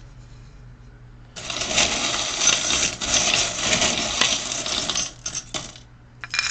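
Small metal charms rattling and clinking as they are shaken in a wooden bowl: a dense rattle of about three and a half seconds starting a little over a second in, then a few separate clinks.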